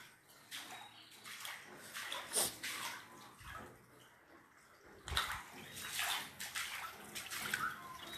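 Floodwater sloshing and splashing in irregular strokes, as someone wades through it.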